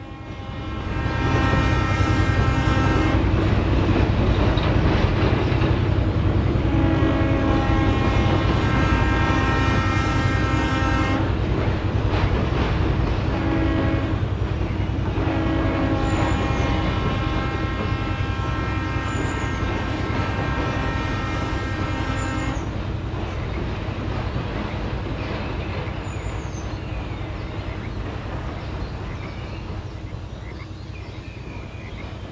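A model locomotive's sound system sounds its horn in the grade-crossing pattern: long, long, short, long, the last blast held for several seconds. A steady engine rumble runs underneath and eases slightly towards the end as the train moves off.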